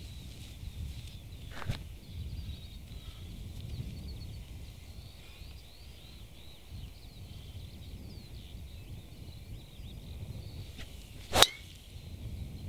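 Golf driver striking a ball off the tee: one sharp crack about half a second before the end, the ball caught a bit low off the face. Before it there is only a steady, low outdoor background.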